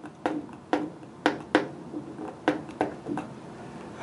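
Dry-erase marker writing on a whiteboard: a series of short taps and strokes, about eight in four seconds.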